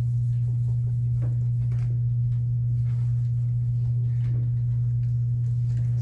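A steady low hum, unchanging throughout, with faint marker strokes on a whiteboard.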